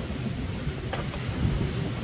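Low rumbling wind buffeting the microphone, with sea noise, aboard an Ultim racing trimaran under sail; a brief tick about a second in.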